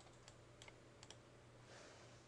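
Near silence with a few faint, scattered clicks of a computer keyboard and mouse.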